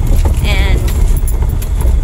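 A vehicle driving over a rough gravel road: a steady low rumble with continual rattling and clattering from the cabin.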